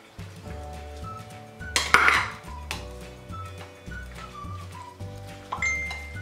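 Background music with a steady bass line, over a plastic spoon scraping and knocking against a glass mixing bowl as raw ground beef and egg are stirred, the loudest scrape about two seconds in.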